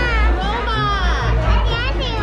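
Loud bar music with a deep, heavy bass line, with children's high voices over it.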